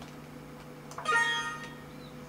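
Windows alert chime: a single short ding of several steady tones about a second in, fading within under a second. It signals an information message box popping up in the chess program.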